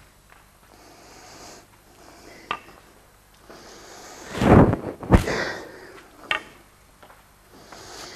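Footsteps and the knocks of a wooden walking staff on a concrete floor: a few sharp taps spread through the seconds, with a louder breathy rush about halfway through.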